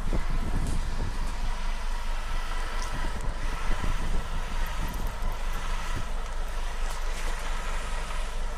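CNG engine of an Orion VII city bus running steadily, heard from close behind the bus: a continuous low rumble with a faint high whine over it.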